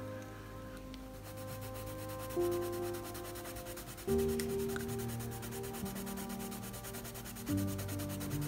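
Faber-Castell Polychromos coloured pencil shading lightly on sketchbook paper: a soft, fast, continuous scratchy rubbing of the lead in quick back-and-forth strokes. Soft background music with held chords that change every couple of seconds plays underneath.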